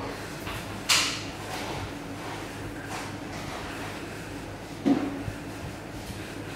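Thin jute twine being pulled tight and wrapped by hand around a Maltese firework shell, with a sharp knock about a second in and another just before the fifth second, over a steady low hum.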